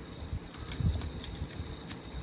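A few light, sharp clicks and handling noise as a magnetic pickup tool is worked into a helicoiled bolt hole in an alloy cylinder head to fish out the broken-off helicoil tang.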